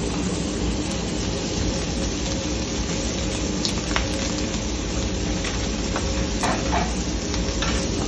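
Chorizo frying in oil on a commercial flat-top griddle, a steady sizzle, with a few light clicks of utensils.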